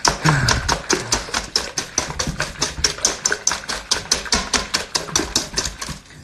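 Wire whisk beating raw eggs in a stainless steel bowl, the wires clattering against the metal in a quick, even rhythm of about six strokes a second.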